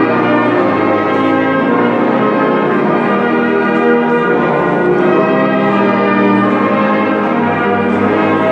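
Brass band playing full, sustained chords, notes changing about every second, with low brass under them, in a large echoing hall.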